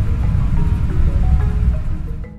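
Air conditioner running with a steady low hum, with soft background music notes over it.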